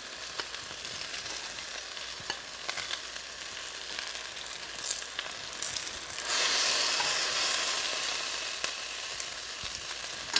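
Eggplant and tomato frying in hot mustard oil in a kadhai: a steady sizzle with a few light clicks. About six seconds in the sizzle suddenly grows louder and brighter, then eases off gradually.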